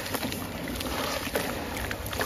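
Wet sand-cement lumps being squeezed and crumbled by hand in a basin of water: gritty, with many small crunches, water sloshing and dribbling.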